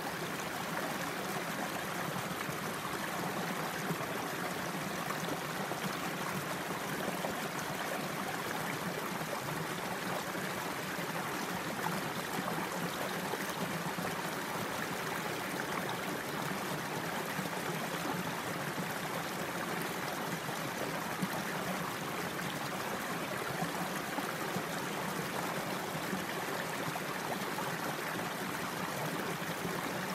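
Shallow creek water running steadily over rocks: an even, unbroken rush.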